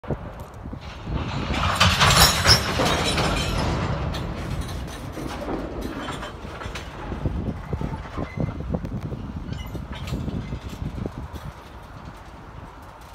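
Freight train of empty steel gondola cars rolling past at close range, steel wheels rumbling and clacking over the rail joints. It is loudest, with a hissing edge, between about one and four seconds in, then settles to a steady rumble with a run of sharp clacks.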